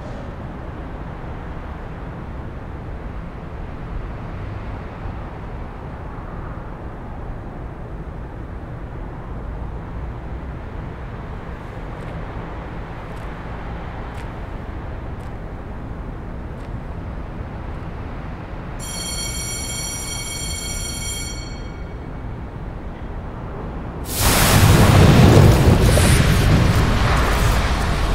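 Steady low outdoor rumble like distant traffic, with a brief high whine with several overtones about three-quarters of the way through. Near the end a sudden, much louder rush of metal-shop machinery noise comes in.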